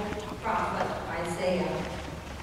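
A person's voice speaking, the words indistinct and a little quieter than the talk around it.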